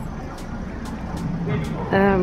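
City street traffic noise: a steady low hum of vehicle engines with passing-car rumble, and a few faint ticks. A voice comes in near the end.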